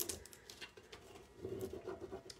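Faint handling noises: a light click at the start, then soft scattered ticks and rustles of transfer scraps being worked by hand.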